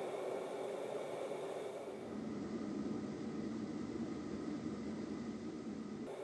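Steady road and engine noise of a vehicle moving at highway speed, heard from inside the cab through a dashcam microphone, with a few faint steady tones above the rumble.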